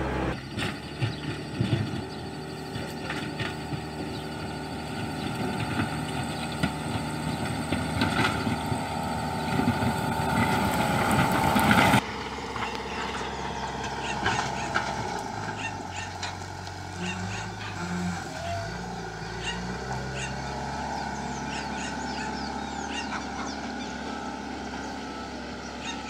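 Backhoe loader's diesel engine running, loud and rising for the first half, then after a sudden cut heard from farther off, its pitch shifting as the machine works.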